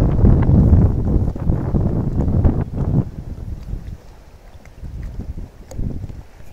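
Wind buffeting a phone microphone over rippling river water, a rough low rumble that is strong for the first three seconds and then eases.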